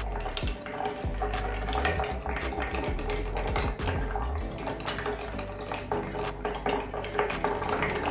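Bar spoon stirring ice in a glass mixing glass: a continuous, rapid clinking and rattling of ice cubes against the glass as the drink is chilled and diluted.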